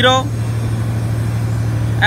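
Steady low machine hum, unchanging throughout, with a strong low drone.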